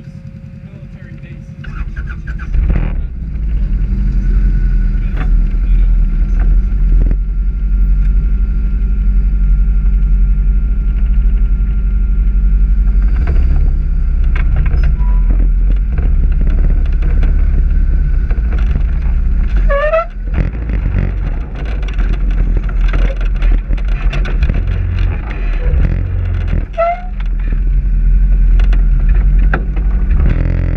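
An off-road vehicle's engine and drivetrain crawling along a rough dirt trail, a steady low rumble that starts about two seconds in. Two short rising squeaks come in the second half.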